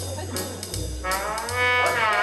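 Electronic organ playing jazz in a trombone voice over a bass line and a drum-machine beat. About a second in, a single held trombone note slides up in pitch.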